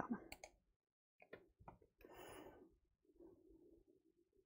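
Near silence with a few faint clicks in the first two seconds and a soft breath about two seconds in.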